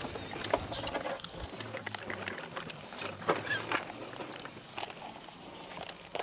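Quiet outdoor ambience with scattered light clicks and knocks from workers in tool belts moving about on a dirt job site, and a faint low hum for a moment in the middle.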